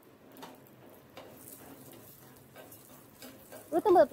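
Faint, scattered clicks and scrapes of a spoon stirring fenugreek seeds as they dry-roast in a small seasoning pan. A woman starts speaking near the end.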